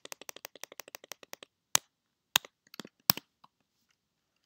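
Typing on a computer keyboard: a quick run of keystrokes over the first second and a half, then a few single, louder key presses.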